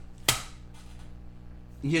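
A single sharp click about a quarter of a second in, over a faint steady low hum.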